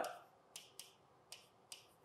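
Four faint, short clicks of a marker tip touching a glass writing board as he draws the branches and letters of a tree diagram.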